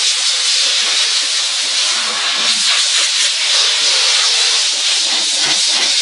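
Steam car-wash machine's hand nozzle blowing a steady, loud hiss of steam while it is worked over a car's plastic interior door panel to lift the dirt.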